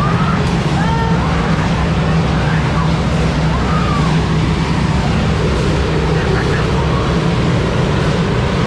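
Steady rumbling wash of pool water around a camera held at the surface, with a few faint voices calling out in the background.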